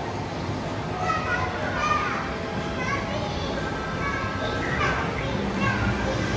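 Young children's high-pitched voices talking and calling out, over steady background noise.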